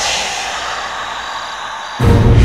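A steady, even hiss that slowly fades.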